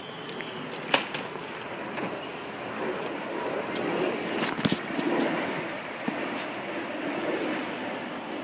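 Footsteps and rustling from a hand-held camera carried while walking, over steady background noise, with a sharp click about a second in and another near five seconds.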